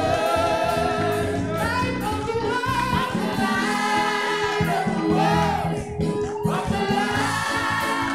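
A gospel worship team of mixed male and female voices singing together in harmony, with held notes over keyboard accompaniment.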